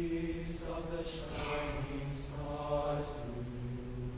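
Young men's choir singing: low voices hold long notes while words are sung above them, and the low line steps down twice in the second half.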